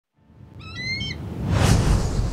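A short bird call about half a second in, over a low rumble that fades in from silence. Then comes a loud rushing whoosh that peaks near the end.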